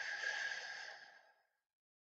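A woman breathing out slowly through her mouth, the relaxing exhale of a breathing exercise: a soft, breathy hiss that fades away a little over a second in.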